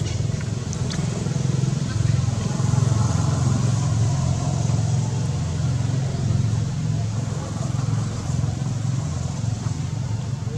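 Steady low rumble of a motor engine running, with a single sharp click right at the start.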